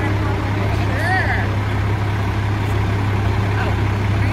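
A fire truck's diesel engine idling with a steady low hum. Faint voices are heard over it about a second in.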